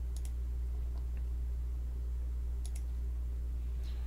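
Computer mouse clicks: a quick double click at the start and another about two and a half seconds later, with a few fainter single clicks. Under them runs a steady low hum.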